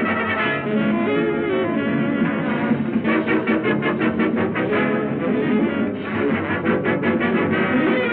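Swing band playing an up-tempo dance number, with brass to the fore. It is heard through an old 1930s film soundtrack that sounds dull and narrow at the top.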